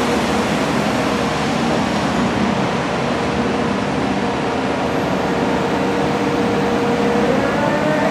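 Steady traffic noise on a city street, with a constant engine hum running underneath.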